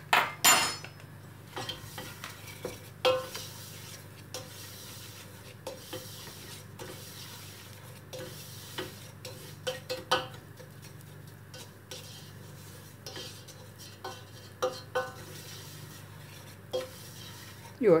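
Wooden spoon stirring and scraping toasting breadcrumbs and sugar in lard around a stainless steel pot, with irregular knocks and scrapes against the metal. A louder knock about half a second in.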